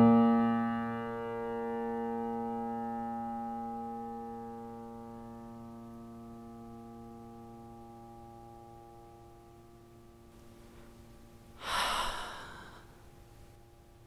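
A piano chord rings out and slowly decays to near nothing. Near the end a person sighs once, a single breath about a second long.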